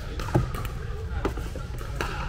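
Scattered sharp pops of pickleball paddles and balls from play on other courts, echoing in a large indoor hall, the loudest about a third of a second in, over a steady low hum.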